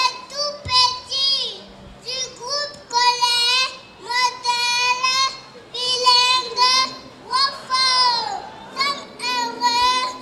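A young girl singing solo into a handheld microphone, in a string of short phrases with held notes.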